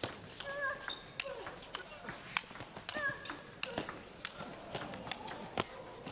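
Table tennis rally: the ball is struck back and forth by the paddles and bounces on the table in quick, irregular sharp clicks, during a long doubles rally.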